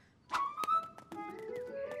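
Light cartoon background music: a few short clicky notes, then a held flute-like tone with a slow line of notes stepping upward beneath it.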